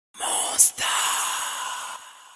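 A long breathy sigh with a short sharp hiss about half a second in, trailing off toward the end.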